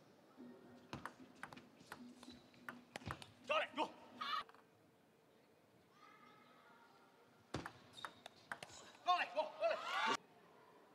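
Table tennis ball clicking sharply off the bats and table during serve and rally. Between the hits there are two short bursts of voices, about halfway through and again near the end, as points end.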